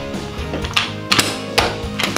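Carpet knee kicker being bumped against the carpet at the base of a wall, three sharp knocks in the second half, pushing the old carpet off the tack strip. Background music plays throughout.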